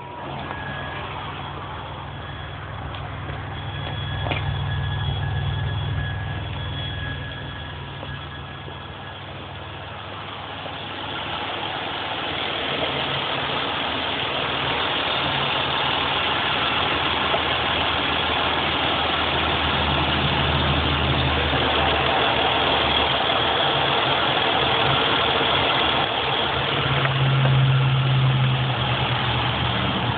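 Chrysler 3.0-litre V6 idling after a Seafoam treatment, heard close up in the engine bay. The engine note swells briefly about four seconds in, and a steady hiss grows louder from about a third of the way through.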